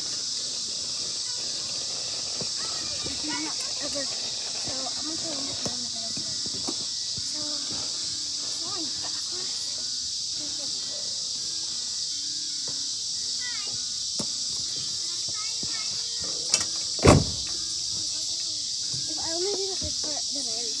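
A steady high-pitched insect drone with faint distant voices, broken near the end by a small knock and then a loud close thump on the playground structure.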